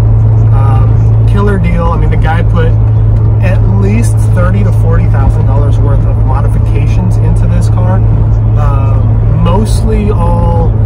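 Steady low drone of a C6 Corvette's V8 at a constant cruise, with road rumble inside the open-roof cabin, holding one pitch throughout.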